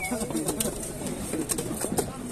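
Heavy cleaver chopping through a seer fish onto a wooden chopping stump, several sharp knocks about half a second to a second apart.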